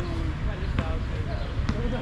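A basketball bouncing on an outdoor court, about three bounces spaced under a second apart, with players' voices calling out.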